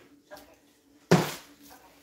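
A person's voice saying "okay" twice, the first quietly and the second louder about a second in, over low room tone with a faint steady hum.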